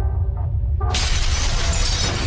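Sound effects of an animated logo intro: a deep steady rumble under a few pitched tones, then about a second in a sudden loud crash of shattering and breaking debris that carries on.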